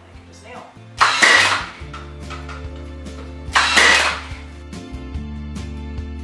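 Battery-powered 18-gauge brad nailer driving nails into a pine frame joint: two loud, sharp shots about two and a half seconds apart, over background music.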